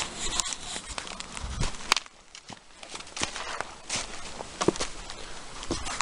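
Footsteps on a muddy, leaf-covered woodland path: an irregular run of crunches, clicks and knocks as someone walks with the camera swinging.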